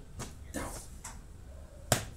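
Toy dinosaurs being knocked together in a mock fight: a few light clacks, then one sharp knock near the end.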